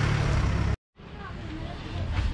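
A vehicle engine running close by with a steady low rumble, cut off abruptly just under a second in; after a moment of silence, quieter street sounds with faint voices follow.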